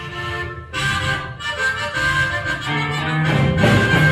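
Live norteño band playing: button accordion carrying the melody over sousaphone bass and guitars. The music comes in at the start and grows louder.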